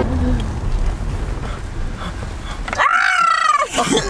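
Low rumble of a car cabin on the move, then about three seconds in a short, loud, warbling groan that sounds like Chewbacca.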